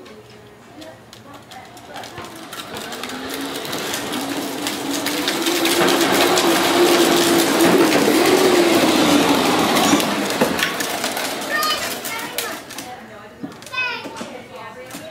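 An engine passing by: its steady drone swells to its loudest about six to ten seconds in, then fades away.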